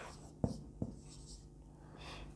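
Marker pen writing on a whiteboard: faint scratchy strokes, with two short clicks in the first second.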